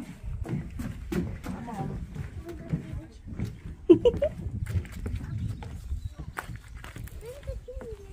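Footsteps knocking on the wooden floorboards and doorstep of a log cabin: a string of irregular knocks.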